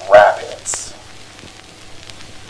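A man's narrating voice ends within the first second. What remains is a faint crackling hiss with scattered clicks over a low steady hum, like the surface noise of an old film soundtrack.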